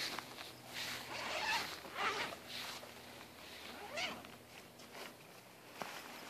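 Zipper of a tent carry bag being pulled open, followed by fabric rustling and swishing as the tent's rain fly is dragged out of the bag, in several short strokes.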